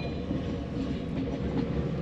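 Sleeper carriage of a moving train heard from inside the compartment: a steady low rumble of the running gear on the track.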